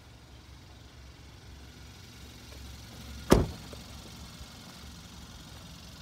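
A car door of a Hyundai ix35 is shut once, a single loud thud about three seconds in, over a steady low rumble.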